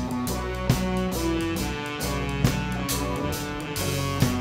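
Indie rock band playing live without vocals: drum kit, bass, guitar and held baritone saxophone notes, with two loud drum hits about a second and three-quarters apart.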